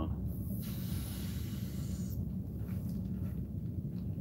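A person's long breathy exhale, lasting about two seconds, over a steady low hum.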